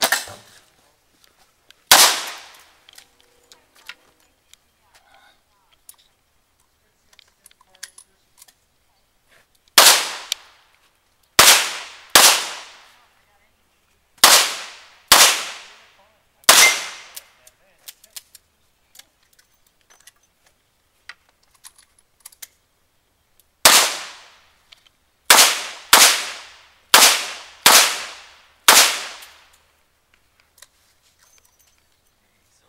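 Handgun shots, each a sharp crack with a short echo: one shot about two seconds in, then a string of six over about seven seconds, a pause of several seconds, then six more in quicker succession near the end. The gun is a revolver.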